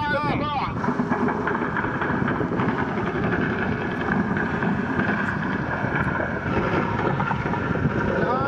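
A man's voice for the first moment, then a steady, rough rumble of wind buffeting the microphone in open air.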